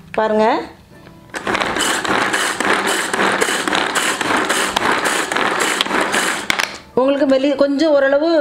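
Pull-cord hand chopper with stainless steel blades worked in a run of quick pulls, the cord zipping out and the blades whirling and chopping vegetables inside the plastic-lidded glass bowl. It starts about a second and a half in and stops about a second before the end.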